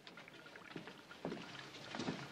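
Faint footsteps of two men walking across a room, a few soft steps over a quiet background.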